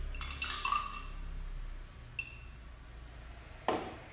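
A spoon stirring salt into a cup of water, clinking against the cup several times in the first second, then a single ringing clink about two seconds in and a sharper knock near the end.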